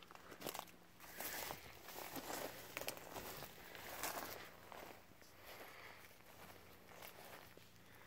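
Faint footsteps scuffing over loose rock and dry grass, irregular and busiest in the first half, with a few sharp clicks, then quieter.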